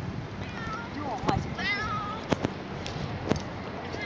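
A tabby stray cat meowing insistently, about three short cries in the first two seconds, with a few sharp taps later on.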